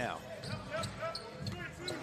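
A basketball being dribbled on the court, a run of repeated bounces over faint arena crowd noise.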